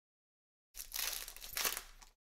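Foil wrapper of a football trading-card pack crinkling as it is torn open and the cards are pulled out, starting about three-quarters of a second in with two louder bursts.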